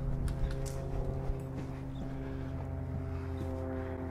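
Footsteps and gear of an airsoft player moving behind cover: a few short knocks and clicks in the first second and a half, over a steady low drone.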